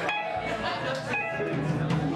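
Amplified electric guitar playing a few loose, separate notes, with crowd chatter underneath.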